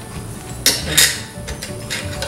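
Quarters clinking as they are handled and dropped into a piggy bank: two sharp clinks about two-thirds of a second and a second in, then a few lighter ticks.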